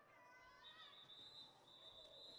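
Near silence: faint arena background, with a thin steady high tone from about half a second in.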